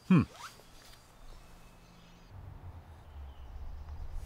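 A short murmured "hmm", then a faint outdoor background in which a low rumble sets in about two seconds in and grows louder.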